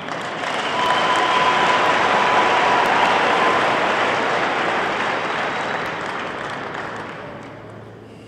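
A large congregation applauding in a big hall. The applause swells within the first second, holds, then dies away over the last few seconds.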